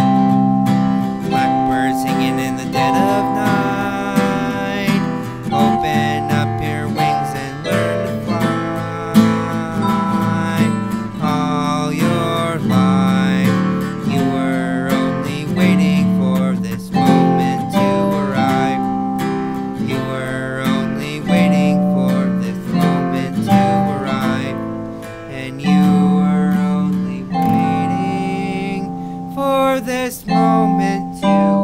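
Acoustic guitar and a Roland electronic keyboard playing an instrumental passage together, with slow held chords and picked guitar notes.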